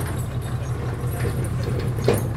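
Large truck's diesel engine running with a steady low hum as the truck slowly pulls away.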